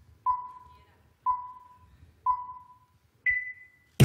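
Electronic countdown beeps, one a second: three pinging tones at the same pitch, each fading away, then a higher, longer tone that marks the start.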